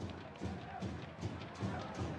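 Quiet background music under faint stadium noise of a football match broadcast.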